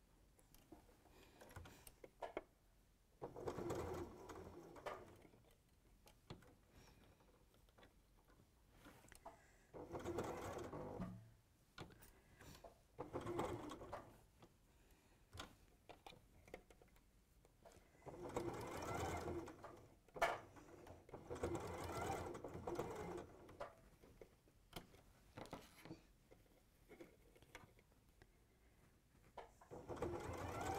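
Electric domestic sewing machine stitching in about five short runs of one to two seconds each, stopping and starting as the fabric is turned round a corner.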